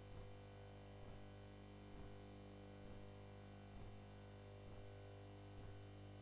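Faint, steady electrical mains hum and buzz on the recording, with soft ticks a little under once a second.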